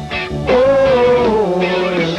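Live rock band playing, with an electric guitar holding a lead note that bends up and back down over the band.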